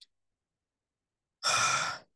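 Silence, then about one and a half seconds in a man's short breath into the microphone, lasting about half a second.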